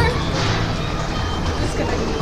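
Indistinct supermarket background noise with a low rumble, heard through a phone being carried along an aisle.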